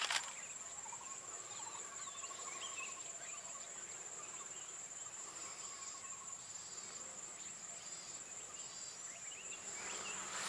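Steady high-pitched drone of a cricket or cicada chorus, with a few faint chirps and whistles scattered over it and a single brief knock at the very start.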